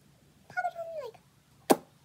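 A short, high, meow-like call that glides down in pitch at its end, followed about half a second later by a single sharp click.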